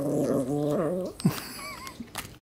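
Yorkshire terrier growling low over its dog biscuit. The growl dips and stops about a second in. It is a warning not to take the treat.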